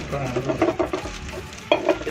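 Plastic parts packaging crinkling and rustling as it is handled, with a faint voice under it and a sharper crackle near the end.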